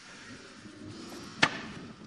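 A single sharp knock about one and a half seconds in, over a low, quiet background.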